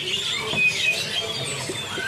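Scattered short, high chirps and whistled notes from many caged songbirds over a steady background murmur.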